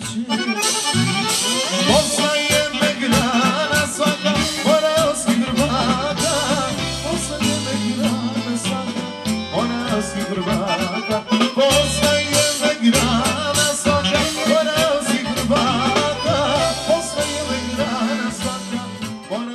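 Live band music: accordion, saxophone and drum kit, with a man singing into a microphone.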